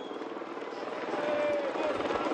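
Outdoor race ambience: a steady engine drone that grows louder, mixed with the voices of spectators at the roadside.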